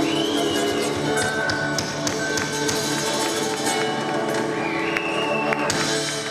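Live country band playing: drum kit keeping a steady beat under electric bass, acoustic guitar and keyboards holding sustained notes.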